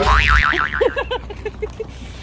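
Cartoon "boing" sound effect: a wobbling, springy tone, then a run of bouncing blips that come quicker and lower in pitch.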